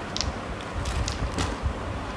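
A few light clicks of plastic molecular-model atom balls knocking together as they are dropped one at a time into a plastic zip bag, over low handling noise.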